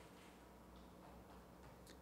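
Near silence: low room hum with a couple of faint clicks, the clearer one near the end, from laptop keys being pressed as the code on screen is paged down.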